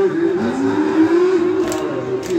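Men's voices chanting a Kashmiri noha, a Shia lament for Muharram, in long held notes that glide up and then hold steady.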